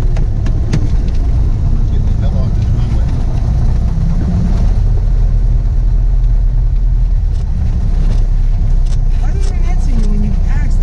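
Single-engine Cessna's piston engine and propeller running steadily at low taxi power, heard from inside the cockpit as a loud, even low drone.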